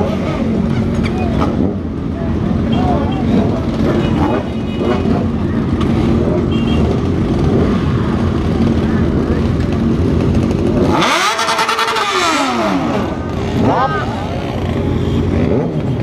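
Several sport motorcycles idle together with voices among them. About eleven seconds in, a motorcycle close by revs hard, its pitch sweeping up and back down over about two seconds, very loud. A shorter rev follows a couple of seconds later.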